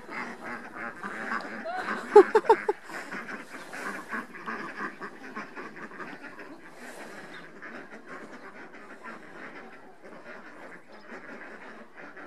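A flock of domestic ducks quacking continuously as they hurry along together, with a few louder calls about two seconds in. The quacking grows fainter as the flock moves off.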